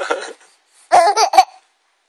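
Baby laughing: a laugh tails off in the first half-second, then after a short pause a second brief burst of high-pitched giggles about a second in.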